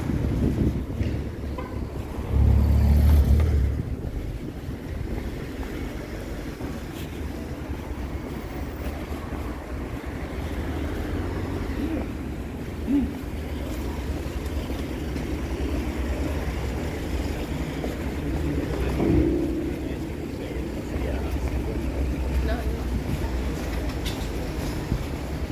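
City street ambience: a steady low rumble of road traffic, with a louder low rumble about two to four seconds in, and voices of passers-by.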